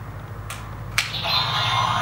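Sharp plastic clicks from a Hasbro Yo-kai Watch toy being worked by hand, a faint one about halfway through and a loud one about a second in. Right after the loud click the toy's speaker starts a high electronic sound with a wavering pitch.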